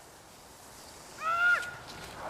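A child's short, high-pitched shout from a distance, about half a second long and falling slightly in pitch, about a second and a half in, over faint outdoor hiss.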